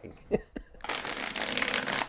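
A deck of tarot cards being riffle-shuffled: a few light taps of the cards, then about a second in a rapid crackling flutter as the two halves riffle together.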